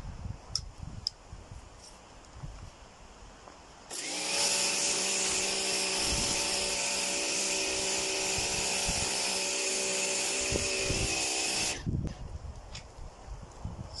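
Pressure washer rinsing snow foam off a car: it starts about four seconds in and runs steadily for about eight seconds, the motor's even hum under the loud hiss of the water jet, then cuts off.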